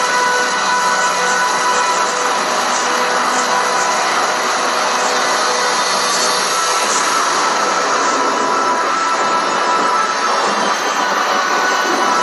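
Loud music, with a steady hiss-like noise mixed through it and a few long held notes.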